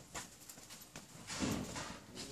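Scattered light clicks and knocks of a seated concert band settling and raising their instruments before playing, with a louder muffled bump about a second and a half in.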